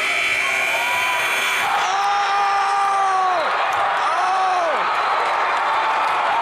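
Gym buzzer sounding for about two seconds at the end of regulation over crowd noise. Then the crowd cheers and a man close by lets out two long whooping yells, the second shorter, in reaction to a full-court shot that sends the game to overtime.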